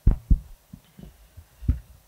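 Microphone handling noise: two sharp low knocks at the very start, then several softer bumps, as a microphone is handled.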